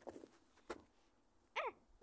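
A single sharp knock about two-thirds of a second in, then a short 'ah' exclamation with falling pitch near the end.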